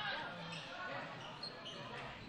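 Faint gym sound during a basketball game: distant crowd and player voices echo in the hall, with a basketball bouncing on the hardwood court.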